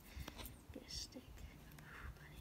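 Mostly quiet, with a faint whisper about a second in and a few light taps and handling knocks.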